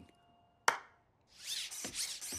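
A single sharp hand clap, then a cartoon robot dog sets off: a mechanical whirring with a couple of dull footfalls.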